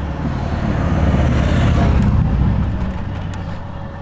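Wind rushing over a handlebar-mounted camera microphone, with tyre noise from the e-bike rolling on asphalt, swelling to a peak about halfway through and easing off.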